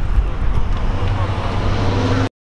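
Road traffic noise with a car going by: a steady, loud low rumble with a noisy hiss over it.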